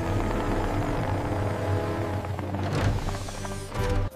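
Background music with sustained notes over a steady low rumble, with a few short knocks near the end.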